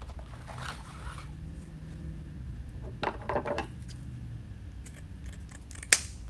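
Ribbon rustling and crinkling as it is folded into loops on a bow maker, with a louder crinkly stretch around three seconds in. Near the end come a few light clicks, then one sharp snip of scissors cutting the ribbon.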